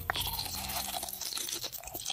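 Blueberries bitten and chewed close to the microphone: a dense, continuous crackle of small crunches and mouth clicks.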